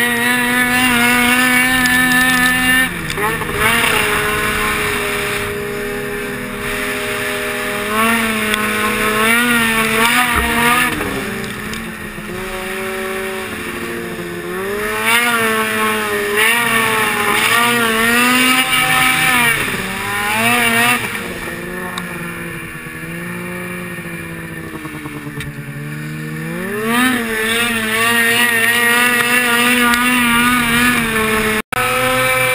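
Snowmobile engine running under way, its pitch rising and falling with the throttle, with a steady climb in revs near the end.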